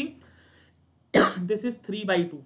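A man coughs once, a sudden sharp burst a little past a second in, and his voice follows straight after.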